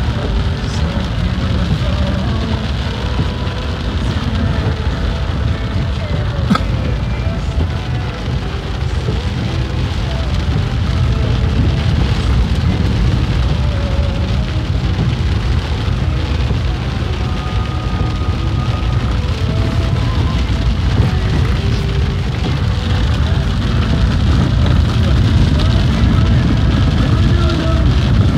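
Heavy rain falling on a car's roof and windshield, heard from inside the cabin, over the steady low rumble of the vehicle and its tyres on a wet dirt road.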